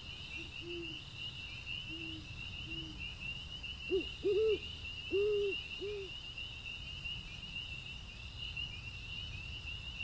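An owl hooting over a steady chorus of crickets. Three soft low hoots come in the first few seconds, then four or five louder hoots around the middle.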